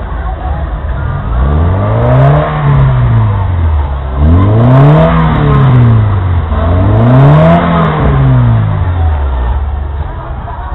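Car engine revved three times, each rev rising in pitch and falling back over about two seconds, the first starting about a second and a half in.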